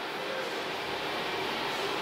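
Steady low hiss of background room noise, like air-conditioning, with no distinct events.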